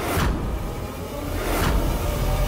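Dramatic background score with a steady low rumble and held tones, cut by two whooshes: one at the start and one about a second and a half in.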